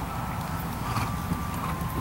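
Dressage horse walking on arena sand, its hoofbeats faint, under a steady low rumble.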